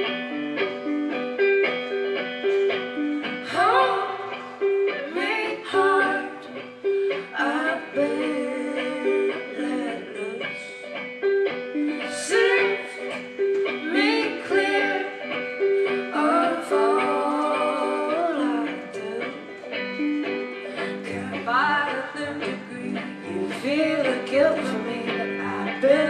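Live indie-folk band playing the instrumental intro of a song: a repeating plucked guitar figure with electric guitar and keyboard, and a melody that slides in pitch coming back every few seconds over it. A low bass line comes in near the end.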